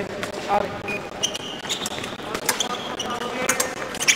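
Fencers' feet thudding on the piste during épée footwork, with a few short metallic clinks and rings of épée blades, over background voices in a large hall.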